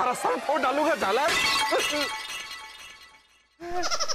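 Voices with a glass-shattering crash laid over them, its ringing dying away over a couple of seconds; a music sting comes in near the end.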